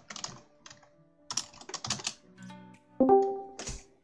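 Keystrokes on a computer keyboard as a short command is typed and sent, then about three seconds in loud music starts abruptly: the music bot beginning to play a game trailer's soundtrack.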